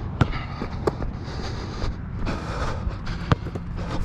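Wilson NCAA Replica basketball bouncing on a hard outdoor court: a few separate sharp smacks, two close together near the start and one more near the end, over a steady low rumble.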